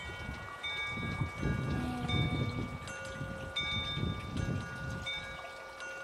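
Metal chimes ringing: several clear tones at different pitches, struck at irregular moments and left to ring on. Under them is an irregular low rumbling.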